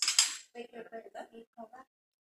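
A knife slitting the plastic wrap on a small Apple Pencil box: one short, sharp scrape right at the start. A quiet voice follows.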